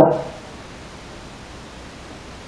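Low steady hiss of room noise, with the tail of a man's spoken word at the very start.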